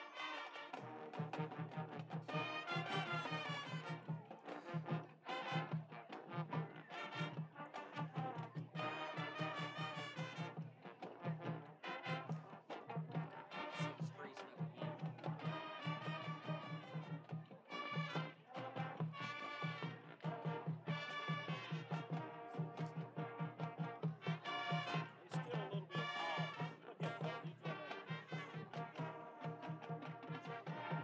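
High school marching band playing a brass-led tune, horns and sousaphones over a steady, driving drum beat.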